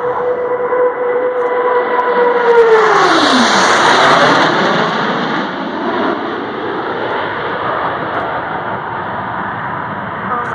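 A formation of Blue Angels F/A-18 Hornet jets flying low overhead. A steady jet whine falls sharply in pitch as they pass about three seconds in, the loudest point, then a broad jet roar slowly fades.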